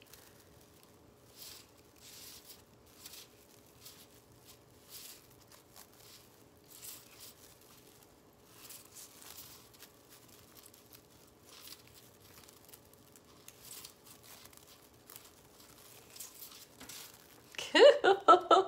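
Plastic deco mesh crinkling and rustling in soft, irregular bursts as it is pulled snug and twisted around a wire witch-hat frame.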